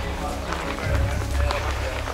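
Outdoor street ambience: a steady low wind rumble on the camera's microphone while walking, with faint voices and faint music in the background.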